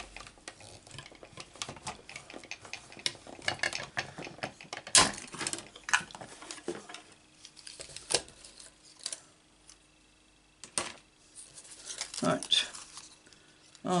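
Thin metal cutting dies and a clear acrylic cutting plate clicking and clattering against each other, with paper rustling, as die-cut card pieces are handled and laid out on a craft mat. The clicks come irregularly, one of the sharpest about five seconds in.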